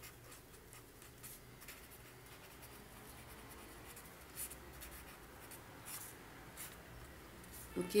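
Pen writing on ruled notebook paper: faint, irregular scratching strokes as a short equation is written out.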